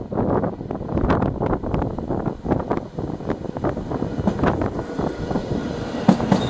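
NS mDDM double-decker electric train running in towards the platform, its rumble mixed with wind buffeting the microphone. A faint high whine comes in during the last couple of seconds.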